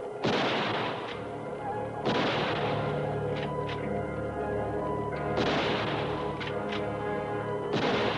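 Four rifle shots, roughly two to three seconds apart, each with a long echoing tail, over a steady low electronic hum and sustained music.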